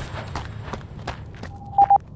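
Footsteps at a running pace, about three a second, over a low hum, then a short high beep near the end.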